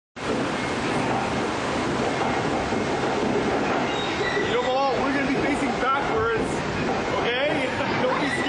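Steady rushing and rumbling of a rapids raft ride's conveyor lift, with water running down the ramp beneath the raft.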